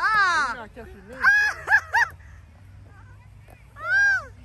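High-pitched wordless cries and exclamations from players reacting to a tossed ball: a long falling cry at the start, three short rising-and-falling cries a second or so in, and another near the end.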